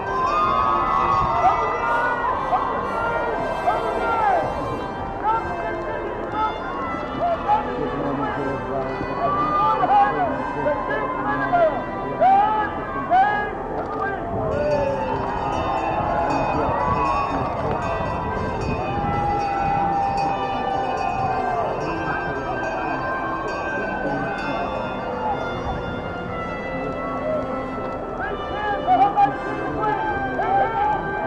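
A large outdoor crowd talking and calling out, many voices overlapping at once, with steady music in the background.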